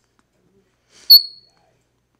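An African grey parrot gives a single short, loud, high-pitched whistle about a second in.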